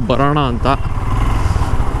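Motorcycle engine running steadily while riding, with a low rumble of engine and road noise. A man's voice talks over it for the first second or so.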